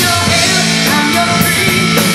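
Live rock band playing loudly: electric guitar, bass and drums in full swing.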